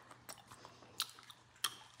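A person chewing a soft jelly candy close to the microphone, quiet and wet with a few faint clicks of the mouth and teeth.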